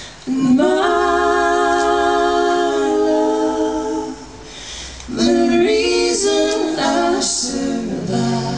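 Mixed male and female voices singing close three-part harmony a cappella. A long chord is held for about four seconds, then after a short break a second phrase of moving notes follows.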